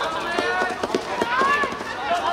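Footballers shouting and calling out on the pitch, over quick running footsteps on artificial turf.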